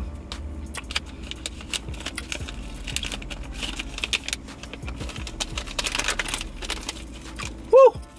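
Plastic candy bag of Sour Strips crinkling as it is handled, a stream of small irregular crackles and rustles. Near the end there is a short, loud voiced sound.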